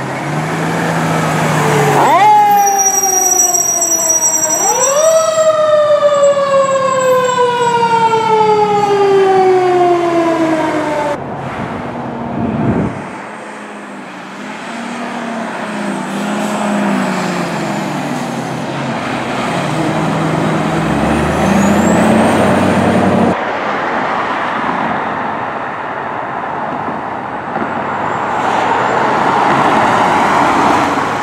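A fire engine's siren winds up twice in quick succession, then winds slowly down over about six seconds. It is followed by the running of truck engines and road noise.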